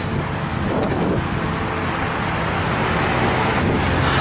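Freeway traffic passing close by: a steady, even rush of road noise.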